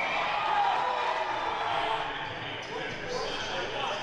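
Hockey game noise in an echoing indoor ice rink: unintelligible shouting voices over play, with occasional knocks.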